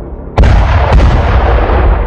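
Cinematic explosion sound effects: a sudden loud blast about half a second in, a second sharp hit just under a second in, then a long low fade.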